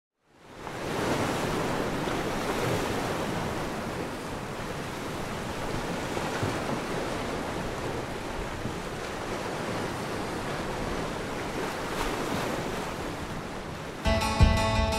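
Steady wash of ocean surf, fading in over the first second and holding evenly throughout.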